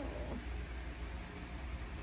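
Steady low rumble with a faint even hiss: background room noise, with no distinct event standing out.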